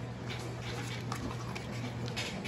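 Faint rustling and light scratching of a hand feeling a leaf inside a cardboard box, a few small clicks scattered through, over a low steady hum.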